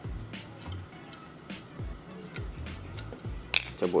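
Quiet background music with low bass notes. A single light metallic click sounds about three and a half seconds in as the gas stove's metal valve housing is handled.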